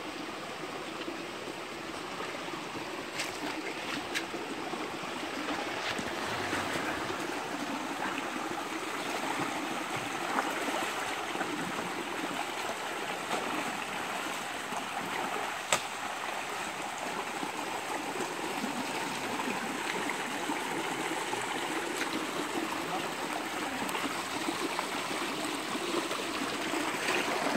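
Shallow creek water running steadily over a rocky bed, with people wading upstream through it and splashing their feet in the water. A single sharp click a little past the middle.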